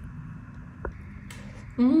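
Knife and fork cutting into a soft layered vegetable bake on a ceramic plate, with two faint clicks of metal on the plate. Near the end comes a woman's loud appreciative "mm" as she tastes it.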